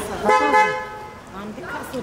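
A car horn sounds once, a steady honk lasting about half a second, starting a quarter of a second in.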